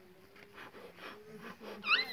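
Children's voices at play, faint at first, then a short, high-pitched squeal rising in pitch near the end.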